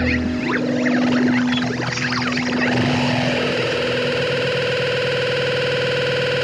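Closing bars of an indie rock song: distorted, effects-laden electric guitar holding long sustained notes, with sliding pitch swoops in the first couple of seconds. The low bass drops out about half a second in, leaving the held guitar tones ringing.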